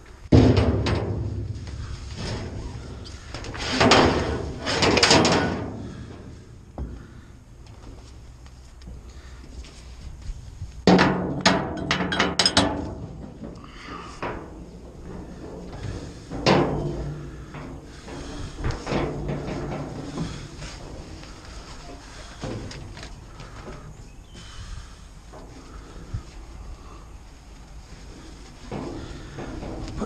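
Yellow ratchet tie-down straps being handled and tensioned in a steel roll-off bin: the strap's metal hooks and ratchet buckle clatter and knock against the steel. There are several separate rattling clatters, the loudest right at the start and around four to five seconds in.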